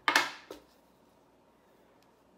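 Small metal scissors snipping through wool yarn: one sharp cut right at the start, then a lighter click about half a second later.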